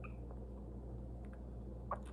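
Baby squirrel suckling formula from a feeding syringe, with faint wet ticks over a steady low room hum. A short high squeak comes right at the start and a brief, louder squeak just before the end.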